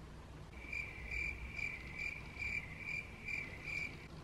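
Cricket chirping, an even run of about two chirps a second that starts half a second in and stops just before talk resumes: the stock 'crickets' sound effect used for an awkward silence.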